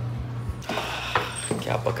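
A door's latch and handle clicking and rattling as the door is unlocked and pushed open, with a low thump about half a second in and a sharp click about a second in.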